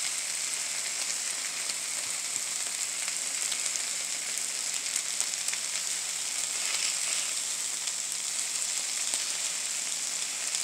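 Bread slathered with mayo and slices of smoked turkey sizzling on a hot griddle set to 325, a steady frying hiss with small crackles.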